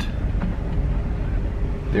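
Steady low rumble of a van's engine and road noise heard from inside the cabin as it drives slowly.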